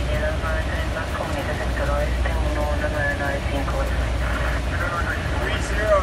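Steady low rumble of an airliner heard on its flight deck, with voices talking over it.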